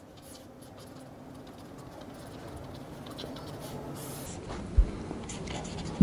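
A pen scratching on paper as an equation is written out in short strokes. A single low thump about five seconds in.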